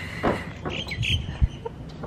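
Two short bird calls around the middle, over a few low bumps.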